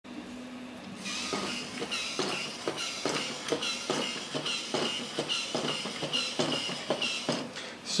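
Motorised 3D-printed walking toy robot: its small gear motor whirring while its plastic feet click on the table in an even rhythm, about two steps a second, starting about a second in.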